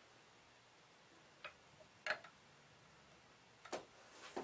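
Three light clicks as a tennis racket is set down across a balancing jig, its frame knocking against the jig's brackets and the scales under them; the clicks come about a second and a half in, at two seconds and near the end.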